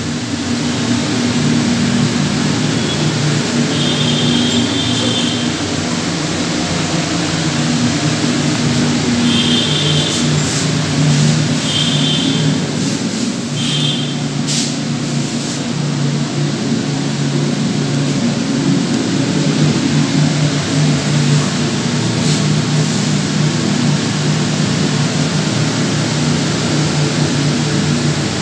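Wall-mounted kitchen chimney's blower running steadily on speed 3, a loud even rush of air over a low motor hum. A few short high-pitched tones sound briefly partway through.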